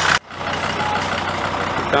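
A vehicle engine idling, a steady low hum. The sound drops out abruptly about a fifth of a second in and comes back a little quieter.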